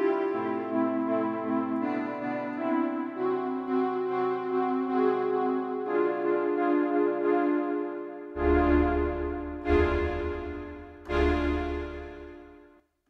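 Akai JURA software synthesizer playing its "Full Stack" preset, with square, saw and sub oscillators through chorus: sustained chords that change every second or two. About two-thirds of the way in come three heavy stabs with a deep bass, roughly a second and a half apart, and the last one fades out.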